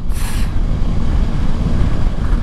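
Honda ST1100 Pan European's V4 engine running steadily at cruising speed, mixed with wind and road noise on the bike-mounted microphone. A brief hiss just after the start.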